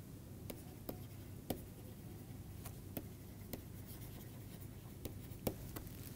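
Stylus writing on a tablet: faint scratching strokes broken by short, light ticks as the pen tip touches down, about nine of them at irregular intervals.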